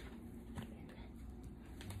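Quiet sounds of bread dough being kneaded by hand on a wooden chopping board, with a couple of faint taps.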